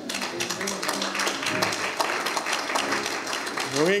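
Congregation applauding, a dense patter of many hands clapping, with a few voices underneath.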